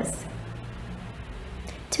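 Quiet room tone with a faint low hum in a pause between spoken phrases; a woman's voice starts again at the very end.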